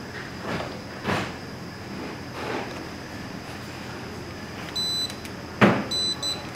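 Handheld spectrometer giving a short high electronic beep as it takes a light reading, about five seconds in, followed at once by a sharp knock from handling the meter. Soft handling rustles come earlier, over a faint steady high whine.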